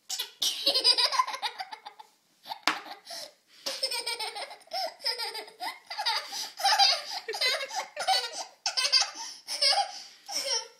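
A young girl laughing hard in repeated fits of giggles, with short breaks between bursts.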